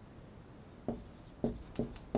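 Dry-erase marker writing on a whiteboard: three short strokes starting about a second in.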